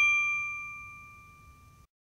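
A single bell-like ding from a logo sound effect, struck once and ringing out with a few clear tones that fade slowly, then cut off shortly before the end.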